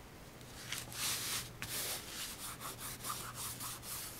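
Hands rubbing and smoothing fabric over a glued cardboard panel: several brushing strokes, the strongest about a second in, then shorter ones.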